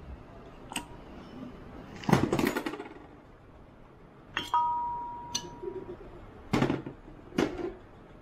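Steel differential parts clinking and clanking as they are handled on a workbench: a few separate knocks, a rattle about two seconds in, and one strike that rings on for over a second, with two more loud knocks near the end.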